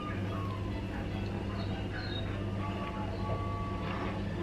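Steady low hum of a kitchen appliance, with faint background music.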